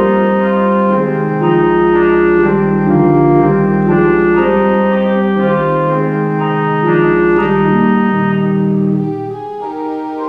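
Church organ played on manuals and pedals: sustained chords moving every second or so over a deep pedal bass. The pedal bass drops out and the sound gets softer near the end.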